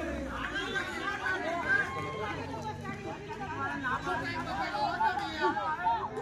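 Many voices of players and spectators talking and calling out at once, overlapping into a continuous chatter with no single clear speaker.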